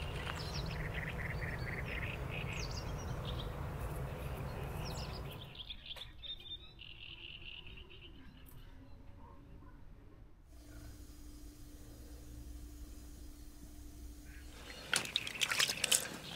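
Outdoor evening ambience with birds chirping over a steady background noise; the background drops away about a third of the way in, leaving quieter chirps, then a faint steady hum, with a few short rustles or knocks near the end.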